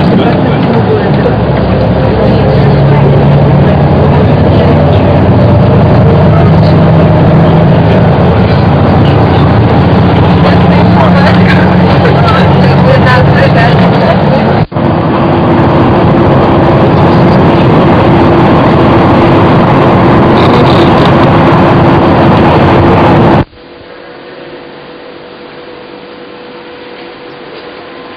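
Loud, steady engine and road drone heard from inside a coach at motorway speed. About 23 seconds in it cuts off abruptly to a much quieter room hum.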